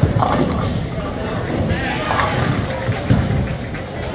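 Indistinct voices talking against a steady background of noise.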